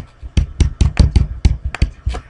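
Stylus tapping on a tablet screen during handwriting: an irregular run of sharp little taps, about six a second.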